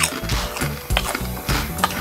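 Crunchy potato chip being chewed close to the microphone: irregular crisp crunches, over background music.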